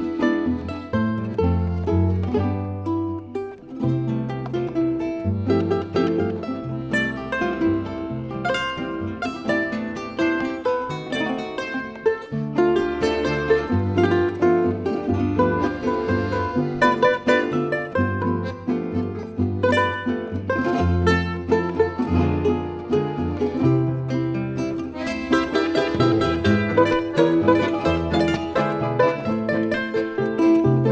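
Instrumental South American folk music played by a plucked-string trio of charango, Venezuelan cuatro and classical guitar, with quick plucked and strummed melody over a moving guitar bass line. The music grows fuller about 25 seconds in.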